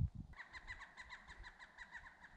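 A bird calling in a fast, even run of short, faint notes, about eight a second, after a low thump or two at the start.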